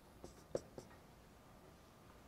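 Pen strokes on a board: three faint short ticks in the first second, then near silence.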